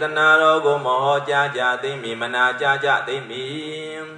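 A Buddhist monk chanting Pali verses in a slow, melodic male voice, holding long notes; the chant trails off near the end.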